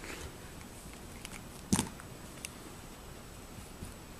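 Golden retriever puppy chewing on her teething rings: a few scattered sharp clicks and knocks of the toy in her mouth, the loudest a little under two seconds in.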